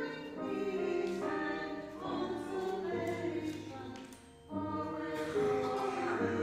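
A small group of three singers performing a choral anthem with piano accompaniment, in sustained sung phrases with a short breath break about four seconds in.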